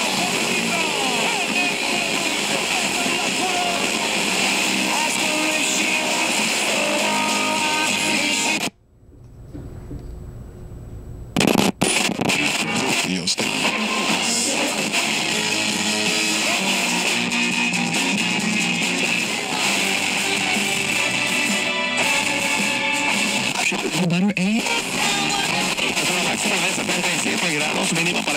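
Radio broadcast from a Sony Walkman's built-in FM radio, played through speakers: music with guitar and voices, louder in one channel than the other. The sound cuts out for about three seconds a little before the middle, then comes back.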